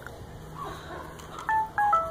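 Three short electronic beeps near the end, each a clean steady tone, stepping down in pitch one after another.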